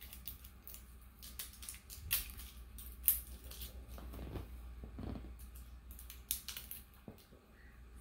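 Scattered small clicks and rustles of a new mascara tube's packaging being worked open by hand, with a few sharper clicks, the loudest about three seconds in.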